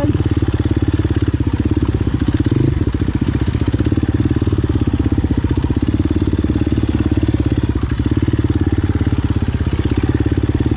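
Enduro dirt bike engine running under throttle at a fairly steady pitch, heard close up from on the bike.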